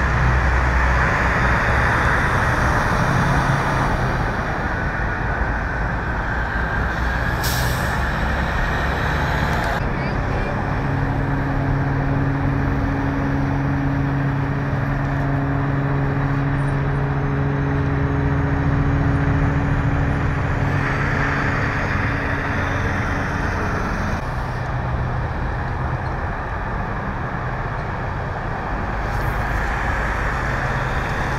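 Steady vehicle and engine noise, with a vehicle engine idling in a steady hum from about ten seconds in until about twenty-four seconds in, and a short sharp hiss about seven seconds in.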